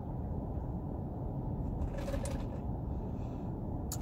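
Steady low rumble inside a car cabin, with a short mouth sound about two seconds in as a drink is tasted from a straw.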